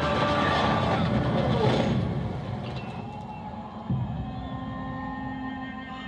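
Film trailer soundtrack: a man's anguished scream over dramatic music for about the first two seconds, then quieter sustained music with a single dull thud near the middle.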